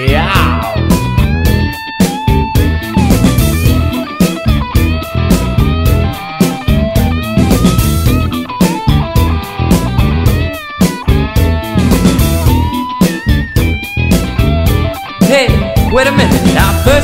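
Funk-rock band playing an instrumental break: an electric guitar lead with notes bending in pitch, over bass and a steady drum beat.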